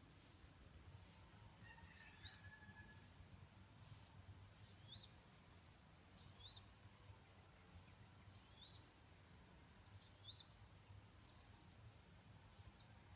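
Faint, quiet outdoor background with a bird repeating a short high call note every couple of seconds.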